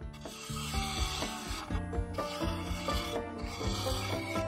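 A bowl gouge cutting the spinning wooden rim of a bowl on a wood lathe: a continuous rough scraping and rasping of the tool on the wood, with the lathe running.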